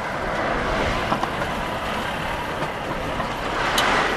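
City road traffic: a motor vehicle passing close by, its noise swelling to a peak near the end.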